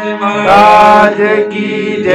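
Harmonium holding a steady reed tone under a man's voice singing a drawn-out devotional bhajan line, which swells in about half a second in.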